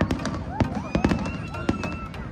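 Fireworks going off in a rapid run of sharp bangs and crackles.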